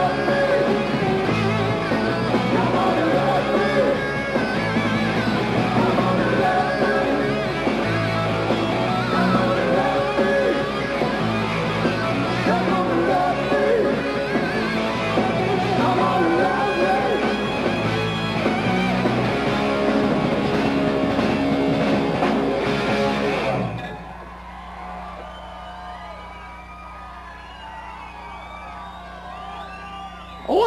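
Live hard rock band playing loud through a club PA: electric guitars, bass, drums and sung vocals. The music stops abruptly about four-fifths of the way through, leaving a much quieter stretch with a steady low hum.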